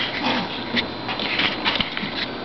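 Bengal kitten at play giving a short low growl early on, followed by scattered sharp clicks and rustles of paws and bodies scuffling on a blanket.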